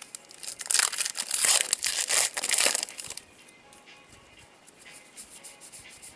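A plastic baseball card pack wrapper crinkling as it is torn open, a loud rustle of about two seconds starting just after the beginning. After it comes quieter handling of the cards.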